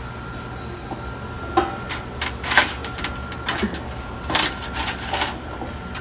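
Coins clinking in the metal coin tray of a laundromat change machine as a hand picks them out: about six separate sharp clinks, over a steady faint hum.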